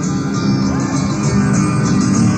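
Live band music: an instrumental passage with guitar and a steady cymbal beat.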